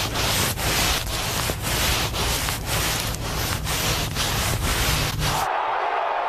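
Rhythmic swishing and brushing of snow as arms sweep through it to make a snow angel, pulsing about twice a second. It cuts off suddenly near the end, giving way to crowd noise.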